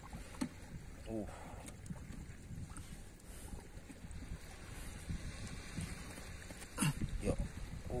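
Shallow seawater sloshing and splashing as hands grapple in a rock hole with an octopus that is still resisting and won't come out, over a low steady rumble. A short grunt of effort comes about a second in, and there is a sharp splash just before the end.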